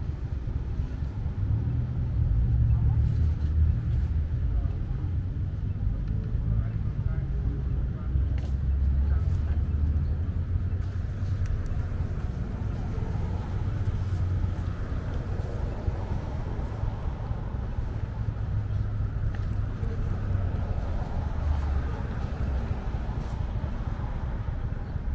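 City street traffic at an intersection: a continuous low rumble of cars that swells and fades.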